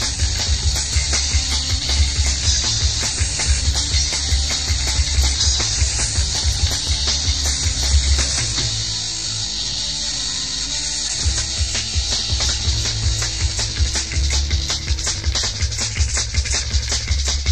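Instrumental passage of a rock band's studio recording, with drums, bass and guitar, under heavy hiss from a cassette copied tape to tape several times. A little past halfway the bass and kick drum drop out for about two seconds, then come back in.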